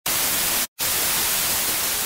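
Steady, loud hiss of white-noise static with a brief silent gap a little under a second in.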